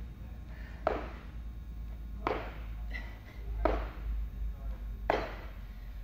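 Feet landing from squat jumps on a rubber-matted gym floor: four thuds about a second and a half apart.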